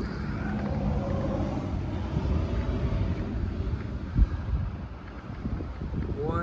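A vehicle engine running with a steady low rumble, with wind on the microphone; a single thump about four seconds in.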